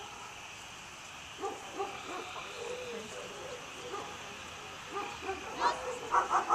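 Dogs barking in a few short bursts, the loudest cluster near the end, over a steady high-pitched background drone.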